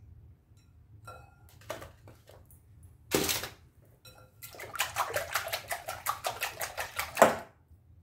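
Eggs being beaten with a pink whisk in a glass mixing bowl: a quick, even run of strokes at about six a second for the last few seconds. There is a louder clatter about three seconds in, before the steady whisking starts.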